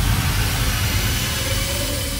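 Electronic logo sound effect: a rumbling noise, deepest in the low end, slowly fading out.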